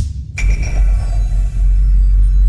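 Cinematic logo sting: a sharp hit, then about half a second in a loud impact with a deep sustained bass boom and ringing high tones that hold and slowly fade.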